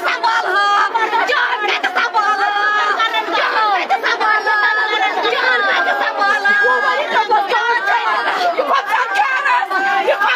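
Many people talking and calling out at once, their voices overlapping in a dense, continuous crowd chatter.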